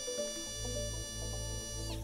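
High-speed bur on a De Soutter MCI-270 pencil-grip surgical handpiece (BI-270 attachment) running unloaded: a steady high-pitched whine that winds down just before the end.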